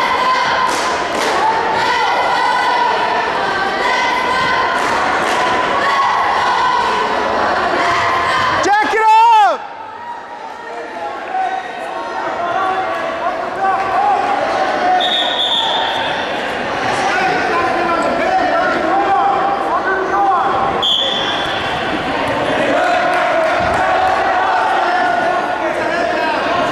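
Gymnasium crowd noise at a wrestling match: spectators and coaches calling out and cheering, with thuds on the mat, echoing in the large hall. A loud sustained shout about nine seconds in, then two short high-pitched tones later on.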